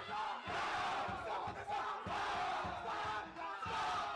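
A group of young men shouting and chanting a war cry together, many voices at once, over a steady low thump about twice a second.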